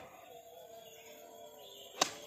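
Quiet outdoor background with a faint steady hum during a golf swing. At the very end comes a single sharp click: the club head striking the golf ball.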